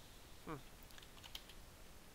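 Faint computer keyboard keystrokes: a few scattered key taps in the second half.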